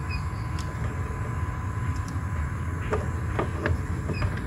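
A few faint plastic clicks as a blade fuse is pushed back into its inline fuse holder in a car's engine bay, over a steady low rumble.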